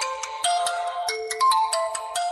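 Mobile phone ringtone playing a bright, quick melody of chiming bell-like notes: the phone ringing with an incoming call.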